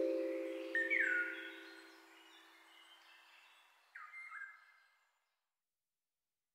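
The song's final chord rings and fades away over about two seconds, while a bird chirps twice with short falling calls: once about a second in and once near four seconds.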